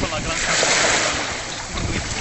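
Sea surf washing, with wind blowing on the microphone.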